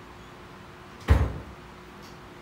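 A single heavy thump about a second in, dying away within half a second, over a steady low hum.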